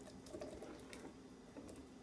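Faint soft wet plops and drips as boiled butternut squash cubes and a little cooking water slide from a glass bowl into a plastic blender jar.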